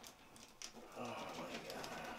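A low, muffled voice humming or murmuring from about a second in, after a few faint clicks.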